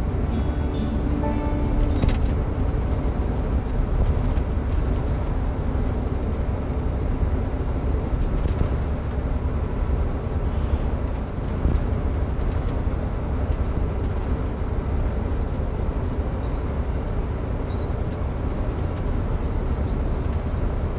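Steady low rumble of a minibus's engine and tyres on the road, heard from inside the passenger cabin.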